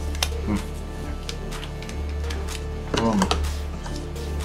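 Background music with a steady low bass, over scattered light clicks and taps from handling double-sided tape and paper.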